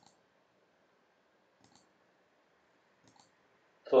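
Faint computer mouse clicks: two clicks about a second and a half apart, each a quick double tick of the button going down and coming back up.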